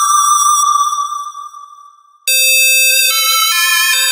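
Synth lead melody from a software synthesizer: a held note fades away over about two seconds, then a buzzier, lower-pitched tone cuts in abruptly and steps through several notes.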